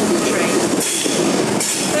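Class 90-hauled passenger train's coaches rolling past the platform, a steady, loud noise of wheels running on rail.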